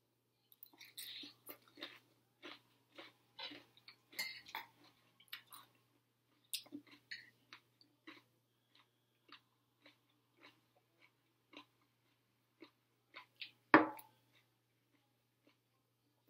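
A person chewing crunchy food close to the microphone: a string of short, wet crunches, busiest in the first few seconds and then sparser. One loud, sharp knock comes near the end.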